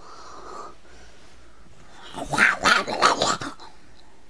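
A dog barking: a quick run of about five barks starting about two seconds in.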